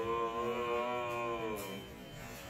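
One long, held moaning voice at a steady pitch, fading away just before two seconds in.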